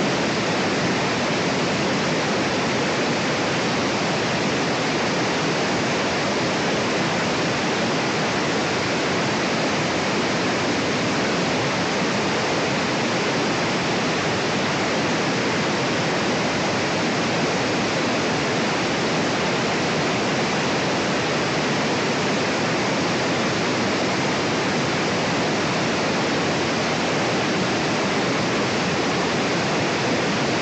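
Angle grinder with a 9-inch disc cutting through a house brick, heard through a webcam microphone as a steady, unchanging hiss-like rush with no clear whine.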